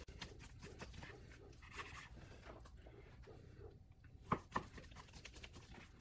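Faint sound of a long breaking knife sawing down in small strokes through a raw beef strip loin, with two light knocks a little past four seconds in.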